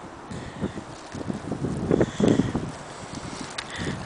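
Footsteps and rustling through low shrubs, uneven and irregular, with the loudest stretch about two seconds in, while wind buffets the microphone.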